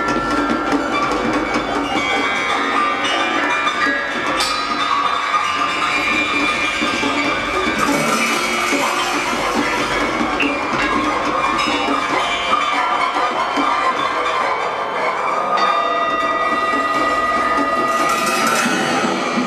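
Live ensemble improvisation: a dense texture of several held tones over continual clattering percussive strokes.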